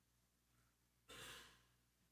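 Near silence, with one faint short breath about a second in.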